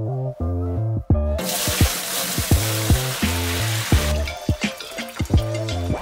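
Tap water running into a large stainless steel brewing kettle for about two and a half seconds, starting about a second and a half in, over background music with a repeating bass line.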